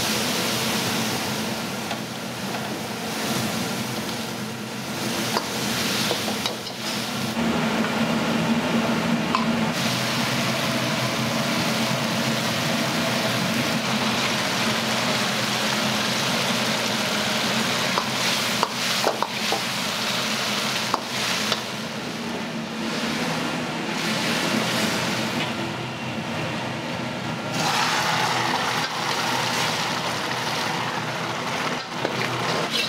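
Mapo tofu cooking in a wok over a gas wok burner: steady sizzling and bubbling under the burner's flame, with a burst of sizzle and steam as liquid hits the hot wok. A few sharp clicks of the metal ladle on the wok come past the middle.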